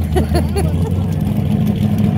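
A drag car's engine idling steadily, loud and deep. A short laugh comes over it near the start.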